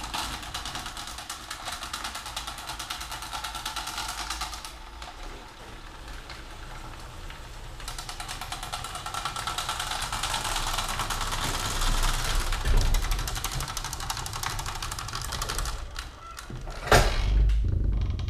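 Somfy Dexxo Pro chain-drive garage door opener starting and running, its motor and chain carriage making a dense rattle as it pulls an up-and-over door shut, easing briefly about five seconds in. About a second after the running stops, a heavy thump as the door closes and the locking kit's bar engages.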